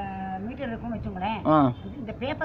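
An elderly woman talking, with one long held vowel at the start and rising-and-falling, sing-song pitch after it.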